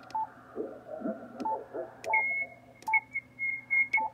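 Muffled sideband voices from the 40 m band coming through the Yaesu FTdx5000MP's speaker, with five short beeps from the radio as the Shift control is stepped. About halfway in, a steady high-pitched whistle of interference comes in and holds.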